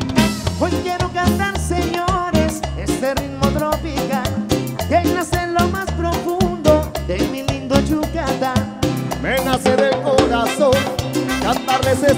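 Live tropical band playing an instrumental passage of a cumbia: a steady, even bass-and-percussion beat with melody lines from electric guitar and horns above it.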